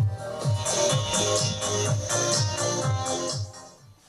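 Music played loudly through an active PA speaker, with a steady kick drum about twice a second. The music fades out near the end.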